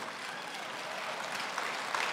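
Congregation applauding, a steady spread of clapping.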